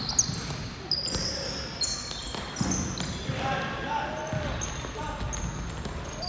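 Basketball game sounds on a hardwood court: sneakers squeaking in short high chirps, a basketball bouncing with sharp knocks, and players' voices calling out around the middle.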